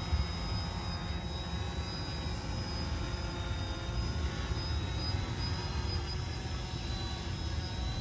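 Multirotor drone's electric motors and propellers running steadily, with a thin high whine that creeps slowly up in pitch over a low rumble.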